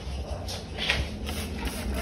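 A trigger spray bottle of chemical spray giving three short hissing sprays, over low rumbling handling noise.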